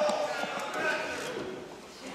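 Voices calling out in a large, echoing hall, dying away over the two seconds.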